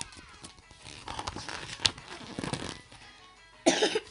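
A book's paper page turning, rustling for a couple of seconds with one sharp snap, then a single loud cough near the end.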